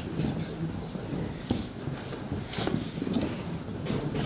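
Indistinct, low murmured voices, with no clear words, continuing throughout.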